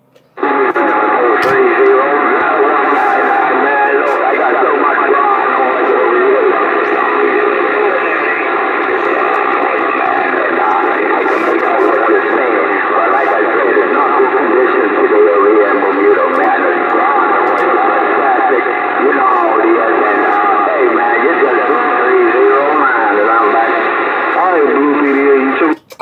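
An incoming AM transmission coming out of a Bearcat CB radio's speaker: thin, narrow-band voice audio from another station. It starts suddenly just after the beginning and cuts off abruptly near the end as the other station unkeys.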